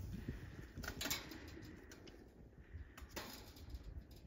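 Faint outdoor sound with a low rumble and a few soft knocks and rustles, one about a second in and another near the end.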